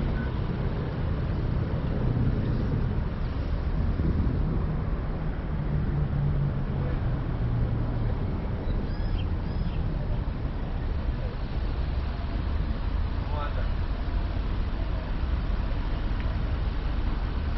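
Car creeping forward with its engine running, a steady low rumble and hum heard from inside the vehicle.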